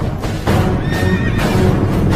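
A horse whinnies about a second in, over the hoofbeats of several galloping horses, with dramatic film music underneath.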